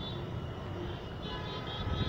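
Low background noise with no speech: a steady hiss and rumble, joined about a second in by faint, high, steady tones.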